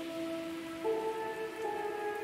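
Soft ambient background music: held notes that move to a new chord about once a second, over a steady hiss like falling rain.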